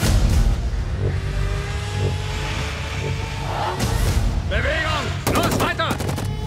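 Cinematic trailer sound design: a deep rumbling drone under music, a shout about four seconds in, then a rapid burst of automatic rifle fire near the end.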